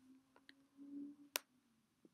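Near silence, broken by one sharp click a little past the middle, a computer mouse click, and a couple of much fainter ticks before it.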